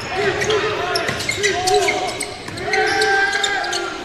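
Basketball being dribbled on a hardwood gym floor, a series of irregular bounces, with voices of players and crowd in the background.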